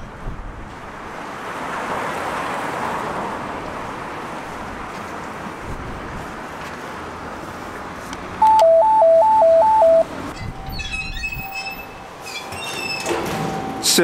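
VIZIT door intercom panel sounding its call signal after a button press: a loud electronic two-note warble alternating rapidly between a higher and a lower pitch for about a second and a half. Before it, a steady hiss of outdoor street noise; after it, a few clicks and short beeps.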